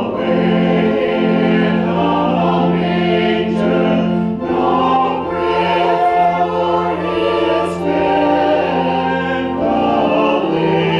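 Mixed church choir of men and women singing in parts, holding sustained notes with short breaks between phrases.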